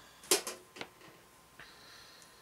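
Sprue cutters snipping plastic kit parts off the sprue: a sharp click about a third of a second in and a fainter one half a second later, followed by a faint hiss.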